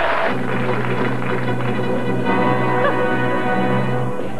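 Orchestral television theme tune played as a quiz clue, with a low note held under it for most of the time.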